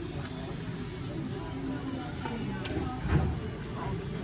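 Restaurant dining-room background: a steady low hum with faint voices, and a short low murmur about three seconds in.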